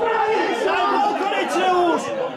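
Several men's voices talking over one another nearby: spectator chatter at the touchline.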